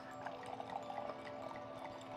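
A drink being poured from a bottle into a wine glass: quiet, trickling liquid over a faint steady tone.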